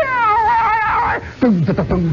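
A man's voice wailing an imitation of Arabic pipe music: a high, wavering note that slides down just after the start, then lower falling notes near the end.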